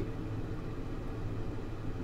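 Room tone: a steady low hum and hiss, with no distinct events.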